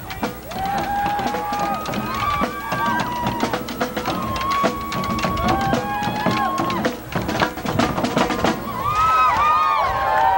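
A brass band with drums playing a tune of long held notes that step up and down in pitch, over a steady beat of drum hits.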